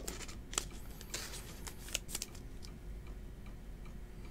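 Faint handling noise of trading cards and a clear plastic card holder: a few soft, scattered clicks and light rustles.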